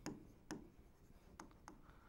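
Faint tapping of a stylus on an interactive display board during handwriting: a few light, separate clicks against near silence.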